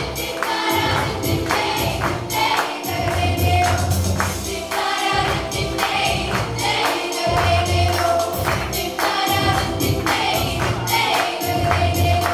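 Children's choir singing in unison, accompanied by an electronic keyboard with a steady percussive beat and a pulsing bass line.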